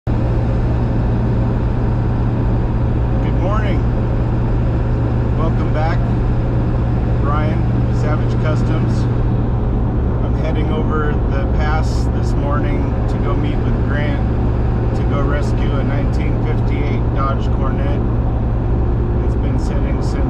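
Steady drone of a pickup truck's engine and road noise heard inside the cab while driving, with a man's voice talking on and off over it.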